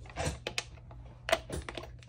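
Small hard plastic parts clicking and tapping as a Blink Outdoor security camera's mount is handled and fitted into the back of the camera: a short rustle, then a few separate sharp clicks, the sharpest a little past halfway. A faint steady hum lies under it.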